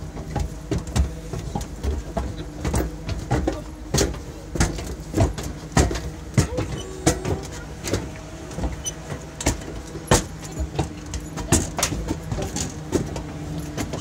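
Footsteps of several people climbing stairs, irregular knocks a couple of times a second, over a steady low engine hum.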